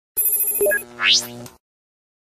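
Short electronic logo sting for a news title card: a bright, steady, ringtone-like chime for about half a second, then a quick rising sweep. It cuts off about a second and a half in.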